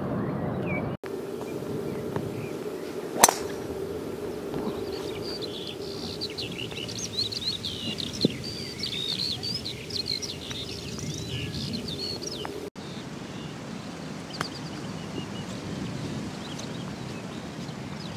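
Birds calling over outdoor golf-course ambience with a faint steady hum. One sharp club-on-ball strike of a golf shot comes about three seconds in.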